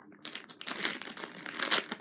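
A squishy's plastic packaging crinkling and crackling in irregular bursts as it is worked open by hand, with louder crackles about a second in and near the end.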